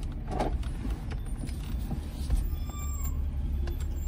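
Car cabin hum: the low, steady rumble of the car's engine and road noise heard from inside, with a few faint, short high squeaks in the middle.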